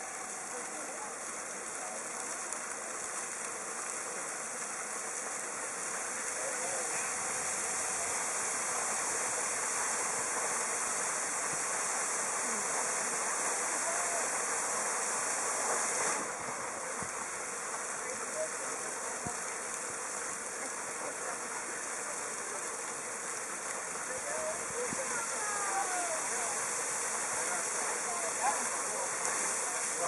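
Geyser fountain's water jets spraying and splashing back into the rock basin: a steady rush of water that grows louder over the first several seconds as the jets rise higher.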